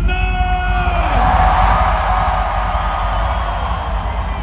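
A large concert crowd cheering and screaming, swelling in after a long held shout over the PA that falls away about a second in, with a low bass rumble underneath.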